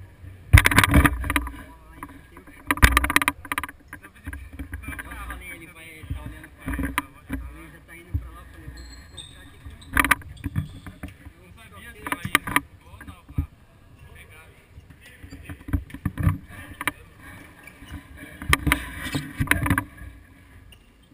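Indoor futsal play heard from a camera worn by a player on the court: irregular sharp knocks of the ball being kicked and of footfalls and jolts on the camera, loudest in a few clusters, over a low steady background and players' calls.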